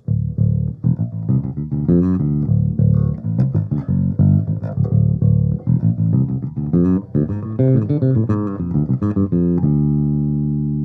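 Ibanez GVB1006 six-string electric bass played as a steady run of plucked notes, its Aguilar preamp's mid-range control set at 800 Hz. Near the end it settles on one long held note that rings on.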